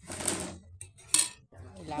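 Rustling handling noise, then a brief sharp clatter of tableware about a second in.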